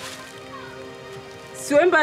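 Background music of soft sustained chords over a light hiss, with a voice speaking briefly near the end.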